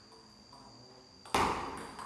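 Table tennis rally: faint ball taps, then a sharp, loud hit of the celluloid ball about two-thirds of the way through, echoing in the hall.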